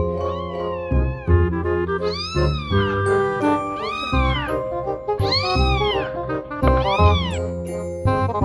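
Grey tabby kitten meowing repeatedly, about five meows that each rise and fall in pitch, over background music.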